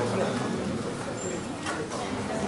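Indistinct speech, distant from the microphone and too faint for the words to be made out, echoing in a large hall.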